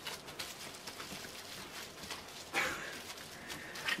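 Quiet rustling and crinkling of plastic wrap as a cellophane-wrapped eyeshadow palette is handled, with small scattered clicks.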